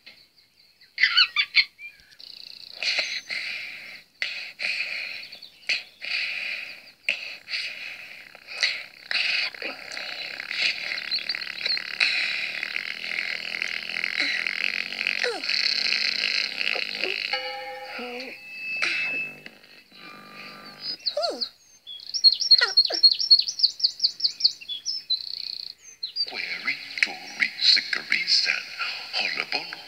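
Children's television soundtrack played through a TV speaker: light music with bird-like chirping sound effects, and a quick run of repeated chirps a little over twenty seconds in.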